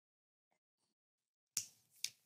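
Near silence, broken about one and a half seconds in by a single short, sharp click.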